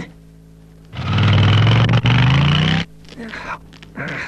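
A vehicle engine is turned over from the driver's seat and runs loudly for about two seconds. Its pitch rises in the second half, then it cuts off suddenly.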